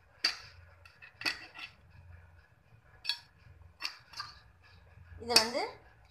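Steel ladle clinking and knocking against the side of a cooking pot while stirring a thick curry, about six separate short clinks.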